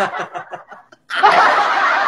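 A man laughing: a few short chuckles, a brief pause just before a second in, then louder, sustained laughter.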